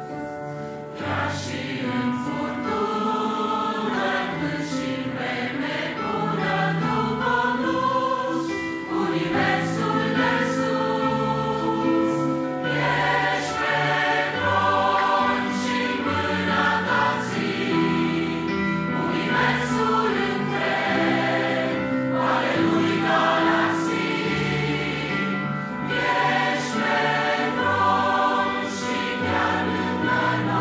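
Mixed-voice church choir singing a Romanian hymn in harmony, accompanied by an electronic keyboard.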